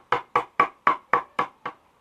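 Soft-faced mallet tapping a chisel into a wooden bass body, chipping out wood: light, even blows about four a second, seven in all, with a faint ring after each, stopping near the end.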